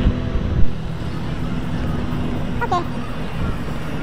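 A car driving past close by on a street, over steady traffic noise, with a sharp knock about half a second in. A brief voice is heard near three seconds in.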